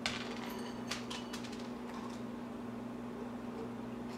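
Pieces of dry dog kibble dropped by hand into a rubber treat toy, a few light clicks in the first second and a half. A steady low hum runs underneath.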